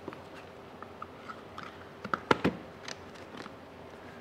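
Light rustling and small clicks of a paper filter and plastic coffee gear being handled and fitted together, with two sharper clicks about halfway through.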